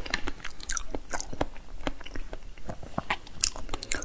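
Close-miked chewing of a mouthful of raw salmon sushi: a quick, irregular series of short mouth clicks and smacks, several a second.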